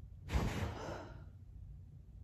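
A woman's sharp, sigh-like breath out about half a second in, fading over the next second, during an involuntary body jerk that she calls myoclonus.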